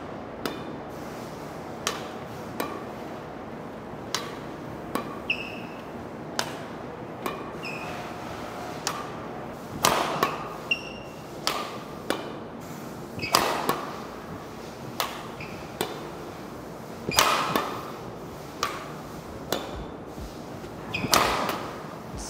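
Badminton rackets hitting shuttlecocks in a feeding drill: sharp, crisp hits about once a second, with several louder smashes ringing in the hall. A few short squeaks come from shoes on the court.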